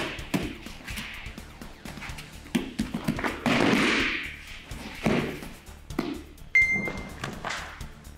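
Background music over knocks and thuds on a tatami mat, the loudest a body falling onto the mat in a kote gaeshi wrist-turn throw about halfway through. A short high ringing ping sounds near the end.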